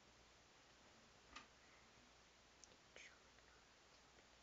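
Near silence: room tone with a few short, faint clicks, one about a second and a half in and two more near the end.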